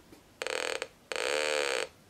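Audible SWR indicator, a 555-timer oscillator wired across a resistive antenna bridge's meter, sounding a buzzy tone with many overtones in two short bursts, the first about half a second long and the second under a second. The tone sounds while the bridge still sees reflected power and falls silent as the antenna coupler is tuned to a null.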